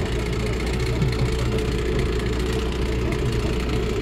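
A vehicle's engine running steadily with a low, even drone, heard from aboard the vehicle as it moves slowly across a pasture.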